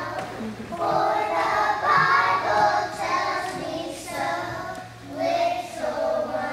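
A group of preschool children singing a song together in unison.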